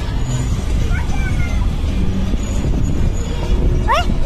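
A steady low rumble, with a child's faint high voice briefly about a second in.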